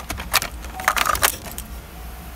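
Car keys jingling, with two short bursts of metallic clinks, one about a third of a second in and one around a second in.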